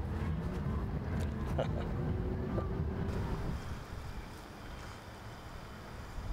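Outdoor wind rumble on the microphone over a low steady hum, which drops away about three and a half seconds in, leaving fainter wind noise.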